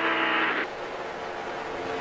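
Team-radio hiss over a steady low hum that cuts off suddenly about half a second in, leaving the low hum running on alone.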